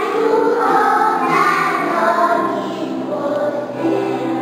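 A choir of young children singing a song together, holding some notes long.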